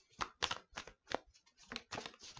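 Tarot cards being shuffled and handled in the hands: a run of short, irregular flicks and snaps, about half a dozen in two seconds.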